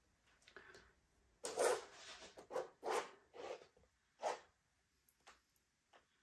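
A small palette knife scraping through wet acrylic pouring paint: a quick run of about six short scraping strokes, then a few faint ones near the end.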